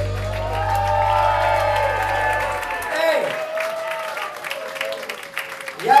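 Final chord of a live rock band's song ringing out and dying away about three seconds in, while the club audience applauds and cheers.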